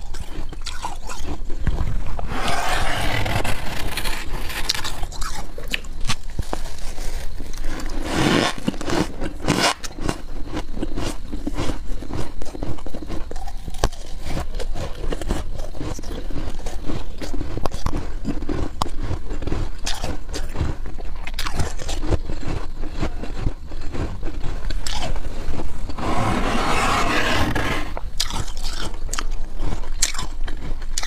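Freezer frost being scraped by hand from the walls of a chest freezer and crunched between the teeth: a constant crisp crackling and crunching, with three longer, louder scraping bursts, about two, eight and twenty-six seconds in.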